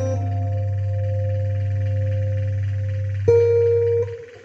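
Guitar playing a slow instrumental: a chord left ringing and slowly fading, then a single note plucked about three seconds in, over a steady low backing drone.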